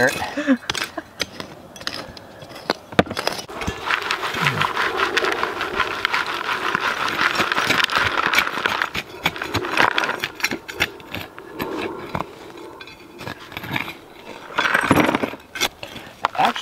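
Soil and small stones shaken in a plastic sifting pan and falling through its screen: a steady rustling hiss full of small ticks, from about four seconds in until about twelve. Before and after it, a small hand digging tool scrapes and chops into loose soil.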